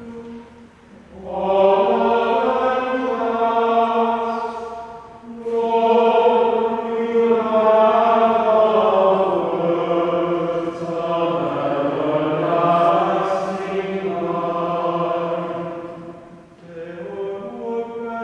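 Sung responsorial psalm in church: chant-like singing in long held phrases, with short pauses for breath about a second in, around five seconds in and near the end.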